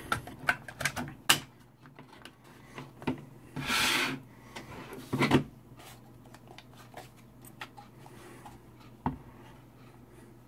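Handling noises of a Yaesu FT-817ND transceiver on a wooden desk: a run of small plastic clicks as its battery cover goes on, a scraping rub about four seconds in as the radio is turned over, a knock about five seconds in, and a single click near the end.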